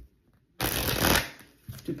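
A deck of oracle cards being riffle-shuffled: one quick rush of flicking cards, starting about half a second in and lasting under a second.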